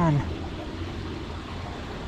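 Steady rushing of water from a runoff flowing into a pond, an even noise with no distinct events.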